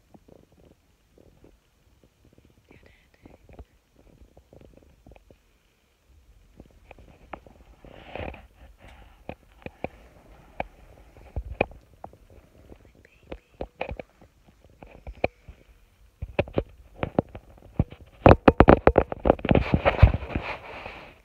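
Handling noise from a handheld phone: scattered knocks and rustles, sparse at first, then busier and louder over the last few seconds.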